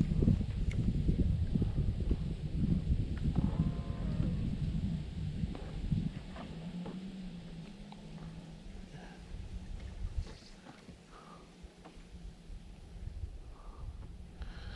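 Wind buffeting the microphone as a fluctuating low rumble that eases after about six seconds, with a steady low hum in the middle.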